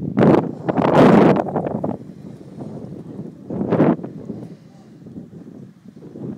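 Wind buffeting the microphone in gusts: loud rough blasts in the first two seconds and again just before four seconds, with a lower rumble between.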